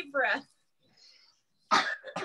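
Short bursts of voiced laughter in a laughter-yoga session: a brief rising-and-falling laugh at the start, a faint breathy sound around one second in, then a sharp, loud, cough-like burst of laughter near the end.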